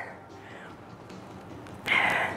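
Quiet room tone with faint background music, then a short breathy rush of noise near the end as the trainer steps into a lunge with dumbbells.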